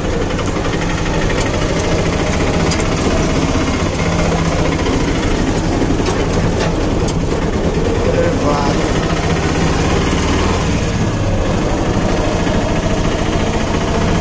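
Auto-rickshaw engine running steadily as the three-wheeler drives along, heard from inside its open passenger cabin.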